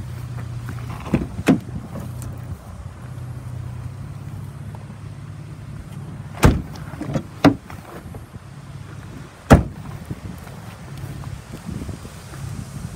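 A steady low hum with several sharp knocks and thumps over it: a pair about a second and a half in, a cluster around six and a half to seven and a half seconds, and the loudest single knock about nine and a half seconds in.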